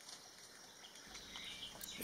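Faint, even background hiss close to silence, growing slightly louder toward the end.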